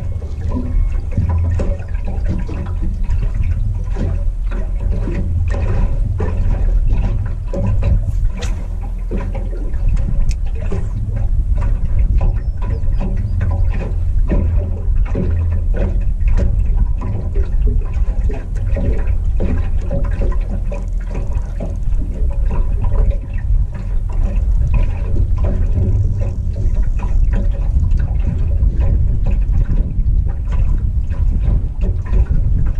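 Water lapping and slapping against the aluminum hull of a drifting Willie boat, a continuous run of small irregular splashes, over a steady low rumble of wind on the microphone.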